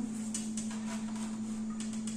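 A steady low hum, with a few faint light scrapes as a plastic spatula works broas loose on an aluminium baking tray.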